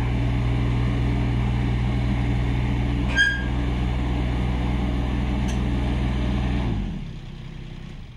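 Kubota U25-3 mini excavator's diesel engine running steadily, with a brief high chirp about three seconds in, then shut off near the end, the sound dying away.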